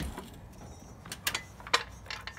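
Hydraulic floor jack being released under a 2004 Infiniti G35 coupe, letting the car down: a soft thud at the start, then a few sharp metallic clicks, the loudest about three-quarters of the way through.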